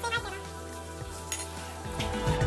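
Metal measuring spoons clinking once, a sharp short clink a little past halfway, over quiet background music.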